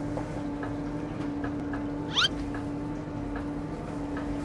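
A steady machine hum with faint scattered ticks, and one short, sharply rising squeak about two seconds in.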